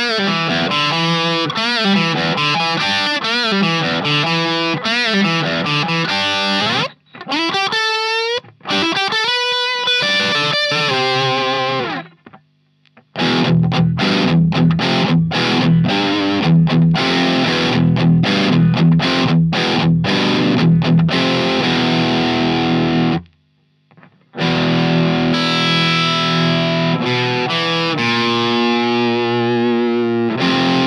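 Distorted electric guitar played through a Marshall DSL100H 100-watt valve amp head on its gain channel, the guitar an all-mahogany Godin LGX-SA with Seymour Duncan pickups. Sustained notes and bent, wavering lead lines come first, then stop-start rhythm chords, with brief breaks about 12 and 23 seconds in.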